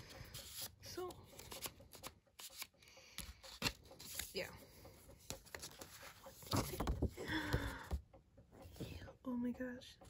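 Paper and card being handled: album inserts and photo cards rustling, sliding and clicking against each other in the hands, with a louder patch of bumps and rustling a little past the middle.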